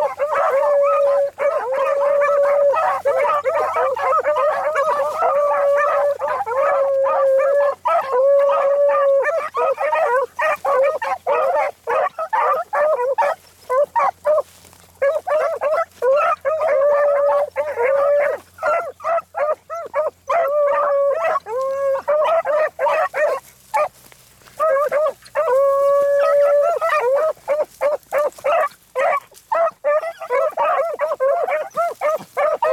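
A pack of beagles baying together on a rabbit's scent line: long drawn-out bawls mixed with short choppy barks, overlapping almost without a break. The pack goes briefly quieter a little past two-thirds of the way through, then picks up again.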